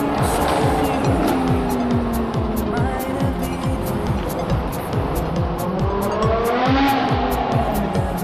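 BMW M6 engine revving in a tunnel, its pitch climbing and then falling about five to seven seconds in, under background music with a fast steady beat.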